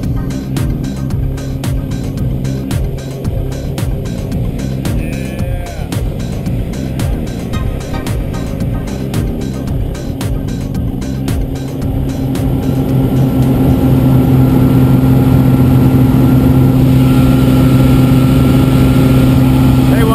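Background music with a steady beat over the drone of a light aircraft's propeller engine at takeoff power; about two thirds of the way through the music drops away and the engine drone grows louder and steady.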